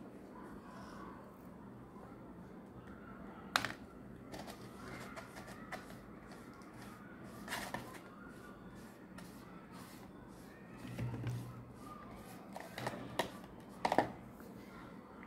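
Quiet tabletop handling sounds: a few sharp light taps and clicks over a steady low hum, as a paintbrush and a paper cone are worked on a cardboard board.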